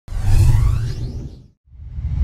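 Whoosh sound effects with a deep rumble underneath, for an animated logo intro. One swoosh comes in at once and fades away over about a second and a half. After a brief silence a second swoosh swells up near the end.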